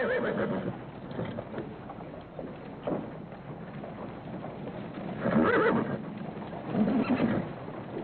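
Horse pulling a buggy along a dirt street: hooves clip-clopping, and the horse whinnying about five seconds in, with a shorter call near seven seconds.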